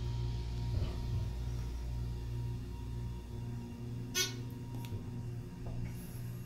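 A 1990 Dover Impulse hydraulic elevator travelling between floors, heard from inside the car as a steady low hum, with a sharp click about four seconds in.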